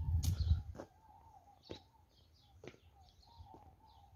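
Footsteps on a tiled floor, a sharp step about once a second, while small birds chirp repeatedly in the background. A low rumble fills the first second.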